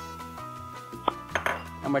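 Soft background music with held notes, and a single clink about a second in from a spoon knocking against a china bowl as grated cheese is scraped into a saucepan.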